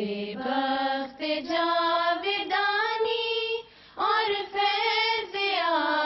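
A single high voice sings an Urdu devotional poem (nazm) with no accompaniment. The notes are long, held and gliding, with a short breath pause a little past halfway.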